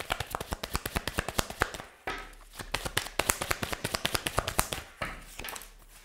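A deck of tarot cards being shuffled by hand: quick runs of sharp card clicks, with a short pause about two seconds in.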